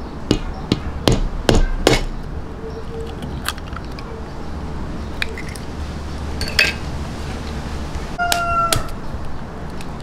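Eggs tapped against the rim of a stainless steel mixing bowl and cracked into batter: a quick run of sharp taps in the first two seconds and another single tap later. Near the end comes a short, steady, high tone with overtones.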